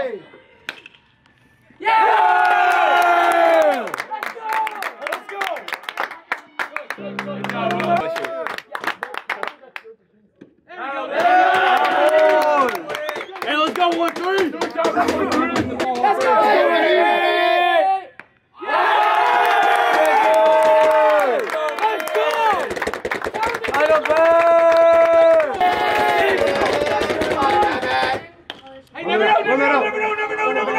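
Baseball crowd and dugout voices yelling and chanting, with some clapping. The sound breaks off briefly several times where the clips are cut together.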